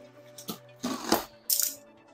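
Box cutter slitting packing tape and a cardboard box being pulled open: a few short crackles and rustles of cardboard, tape and plastic wrap.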